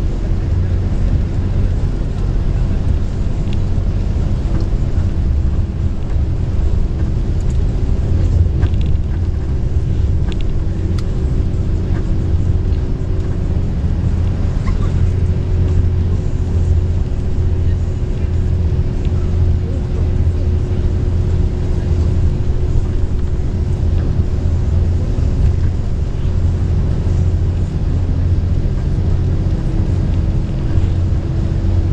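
Steady deep engine and road rumble inside a long-distance coach bus cruising on the highway, with a constant hum over it.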